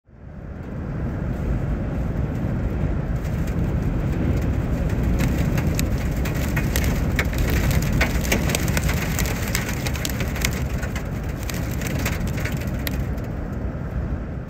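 Strong windstorm wind, gusting up to 65 mph, blasting the microphone with a loud, steady rumble, and many sharp ticks and pops through the middle of it.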